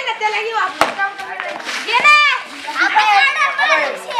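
Children shouting and calling out to one another during a game of street cricket, with one sharp knock a little under a second in and a long high-pitched call about two seconds in.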